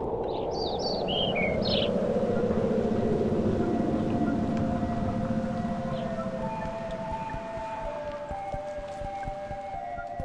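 Street traffic noise swelling and then fading, with a few short bird chirps in the first two seconds. Soft sustained music notes come in during the second half.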